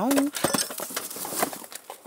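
Rustling and light clattering of junk (cardboard boxes, plastic containers) as a power bar's extension cord is tugged out of the pile, in quick irregular clicks.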